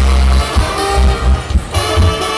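Live band dance music played loud through a PA system, with a heavy, pulsing bass beat.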